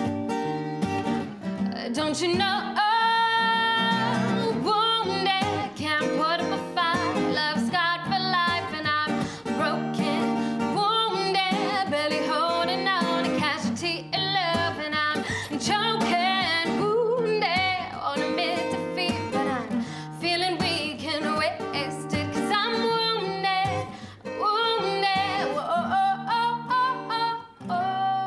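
A woman singing live to a single acoustic guitar, the vocal line held over steady plucked chords.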